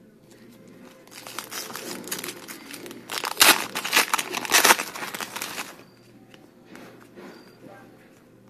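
Foil trading-card pack crinkling and tearing as it is ripped open: a dense crackle that builds about a second in, is loudest in the middle, and stops about six seconds in, followed by a few lighter crinkles.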